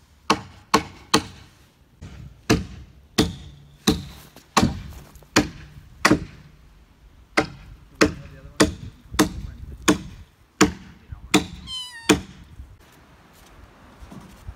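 Hand hammering, about seventeen sharp blows at an uneven pace of one every half second or so, stopping about twelve seconds in. A kitten meows once near the end.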